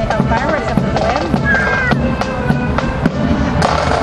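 Marching accordion band playing, with sharp drum beats throughout and people's voices nearby.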